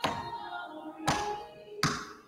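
Three sharp thumps close to the microphone, on or against the pulpit, the first at the start, the next about a second in and the last near the end. Soft background music plays underneath.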